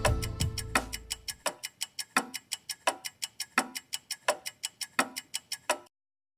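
The song's backing music fades out over the first second and a half, leaving a rhythmic ticking of about seven light ticks a second with a stronger tick every two-thirds of a second or so. The ticking cuts off suddenly near the end.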